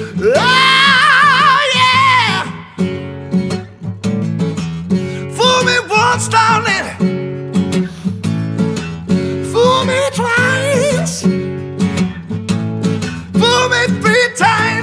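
Male soul vocal with acoustic guitar: a long held sung note with vibrato, then strummed chords in a steady rhythm with short wordless sung phrases over them.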